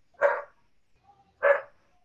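A dog barking twice, two short barks about a second apart.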